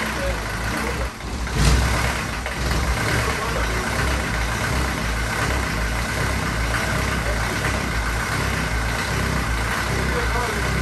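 Mercedes-Benz 307D's four-cylinder diesel engine idling steadily, with a brief louder surge about a second and a half in.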